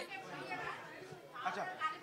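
Faint background chatter of several voices after the close-up speaker falls silent, with one voice saying a short word near the end.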